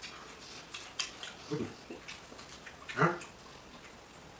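Wet chewing and lip-smacking clicks from people eating by hand, with a short hum about one and a half seconds in and a louder brief vocal sound about three seconds in.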